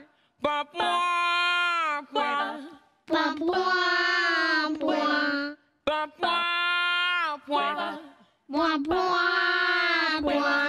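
Unaccompanied voices singing nonsense syllables in call and response, a woman's voice and childlike puppet voices trading long held, sliding notes with short breaks between phrases.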